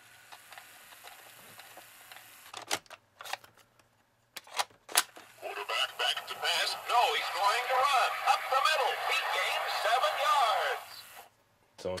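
Mattel Talking Monday Night Football sportscaster voice unit: a few sharp plastic clicks as a play record is loaded and set going, then about five seconds of a recorded announcer calling a play from the small record, thin and with no bass. The voice cuts off abruptly near the end.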